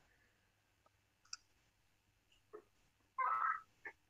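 A few faint, sparse computer mouse clicks over a very quiet call line, with one slightly louder sound lasting about half a second near the end.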